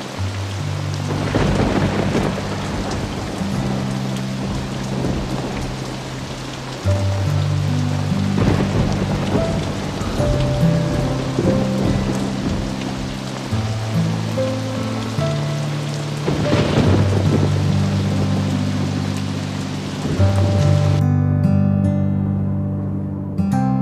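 Heavy rain pouring, with thunder cracking and rumbling about three times, under a soundtrack score of sustained low chords. Near the end the rain drops out and only the music goes on.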